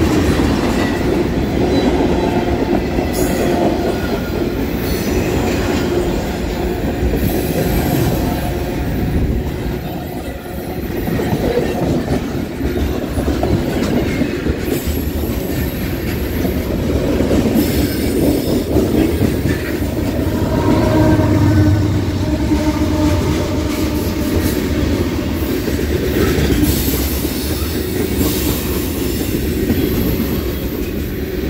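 Freight cars rolling past at close range over bad rail: a continuous, loud rumble and clatter of steel wheels on the track.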